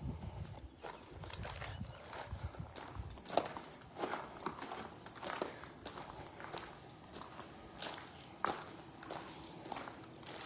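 Footsteps crunching on gravel, about one step a second, with a low rumble for the first three seconds.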